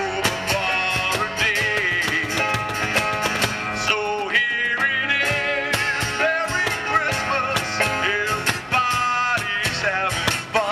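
Acoustic band playing a song: two acoustic guitars, a cajon keeping the beat, and a male voice singing over them.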